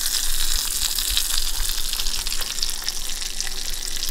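Round slices of meat sizzling in fat in a frying pan: a steady hiss with fine, fast crackling.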